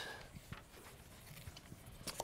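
Quiet room tone with a few faint, light taps.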